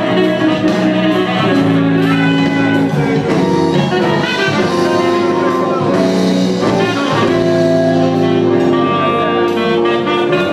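Electric guitar played live through an effects pedalboard, with a melodic lead line of long held notes over other parts sounding at the same time.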